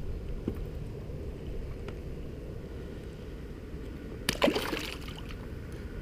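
Steady low rumble of wind and water around an inflatable boat, with a short splash about four seconds in as a small largemouth bass is let go back into the lake.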